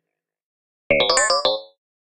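A short edited-in cartoon-style sound effect of several ringing tones. It starts suddenly about a second in and dies away within a second.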